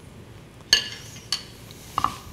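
Two short, light metallic clinks about half a second apart, as kitchen utensils touch a dish.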